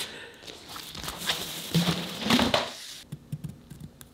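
Fabric rustling as it is handled, loudest about two seconds in. About three seconds in it gives way to light, scattered ticks of a pencil marking fabric along a ruler.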